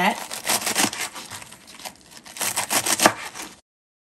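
Chef's knife slicing through crisp romaine lettuce on a wooden cutting board: crunching cuts with the blade knocking the board, in two quick runs of strokes. The sound cuts off suddenly near the end.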